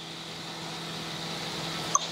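Steady background hum and hiss with a faint continuous drone, and a small click near the end.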